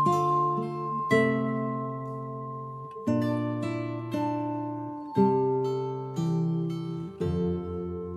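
Slow instrumental music of ringing plucked and struck notes. A new chord sounds every one to two seconds, low and high notes together, each ringing on and fading before the next.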